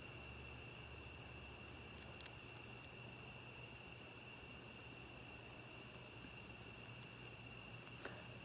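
Faint, steady chorus of night insects: a continuous high-pitched trill with no breaks.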